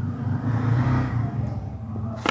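Low rumble of a road vehicle passing, swelling about a second in and then fading.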